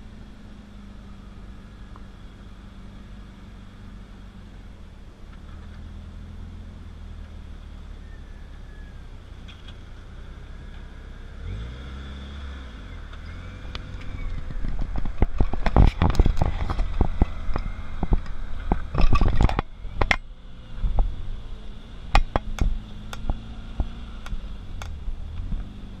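Jeep Wrangler YJ's 2.5-litre four-cylinder engine running at low revs as it crawls closer over rock, then revving up about halfway through as it climbs past close by. Loud knocks and clattering come in the second half as it works over the rocks.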